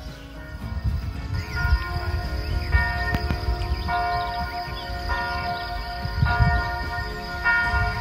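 Village church bells ringing the noon hour, with a fresh stroke about once a second and a long ringing hum between strokes. A low rumble runs underneath.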